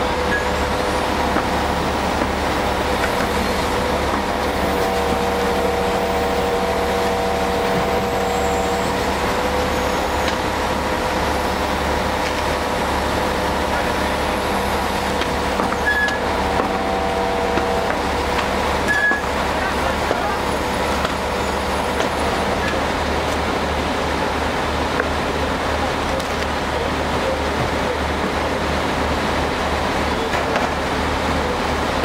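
Steady running of a fire engine's motor and water pump, a constant low hum with a few held whining tones that drop in and out, under a continuous hiss of water and steam from the fire being hosed down.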